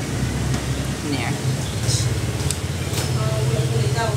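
Background noise of a small street-front eatery: a steady low hum with faint scattered voices and a few brief clicks.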